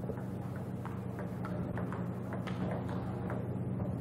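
Table tennis rally: the ping-pong ball clicking sharply off the paddles and table in a quick, irregular series, over a steady low electrical hum.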